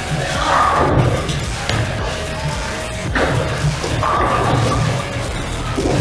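Bowling alley sounds: a ball delivered down the lane and a crash of pins about three seconds in, over the hubbub of other lanes.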